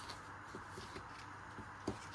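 Faint rustling of a paper packet as baking powder is shaken out into a glass bowl of flour, with a light tick just before the end.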